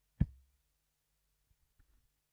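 A steel-tip dart hitting a Winmau bristle dartboard: one sharp thud just after the start. A few faint small clicks follow near the end.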